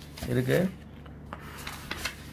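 Paper sheets rustling and rubbing as pages are turned over, with a few soft crisp strokes in the second half. A brief voice sound comes about half a second in.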